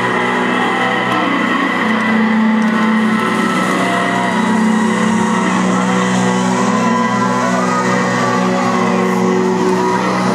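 Live rock band, heard from within the crowd, playing held, droning electric guitar and keyboard chords with no clear beat, loud and steady throughout.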